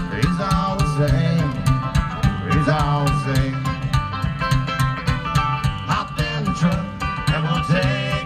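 Fast bluegrass music: plucked banjo and guitar over a pulsing bass line, played without a break, in an instrumental stretch between sung lines.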